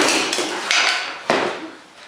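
Bio3Blaster portable ozone generator clattering and rattling as it comes to rest after a drop of about eight feet onto a concrete floor. The sound fades over the first second, and a sharp knock follows a little past a second in.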